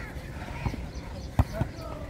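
Three dull thuds of a volleyball being struck and landing on a dirt court, the loudest about a second and a half in.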